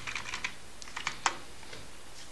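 Computer keyboard typing: a quick run of keystrokes, then a few more and one louder key press about a second and a quarter in.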